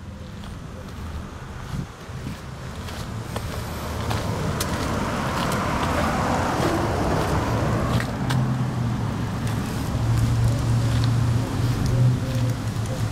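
Street traffic: a passing car's rushing noise swells to a peak a little past the middle and fades, followed by a low, steady engine hum.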